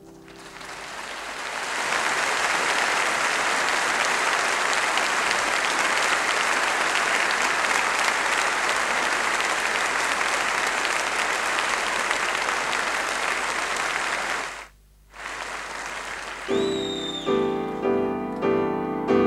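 Audience applauding, building over the first couple of seconds and then holding steady, with a brief break near the end. Solo piano starts again in the last second or so, along with a short high whistle-like tone.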